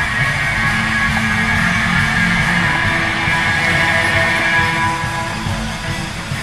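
Band music with guitar, playing steadily.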